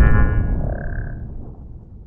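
Tail of a cinematic logo-sting sound effect: the deep rumble of a boom dying away, with a brief high ringing shimmer in the first second.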